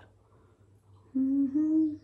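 A woman humming with her mouth closed: a short low note, then a slightly higher one, together under a second, near the end.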